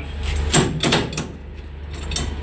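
Metal clanks and clicks from a semi-trailer's landing-gear crank handle being taken in hand and shifted at the gearbox: a handful of sharp knocks over a steady low hum.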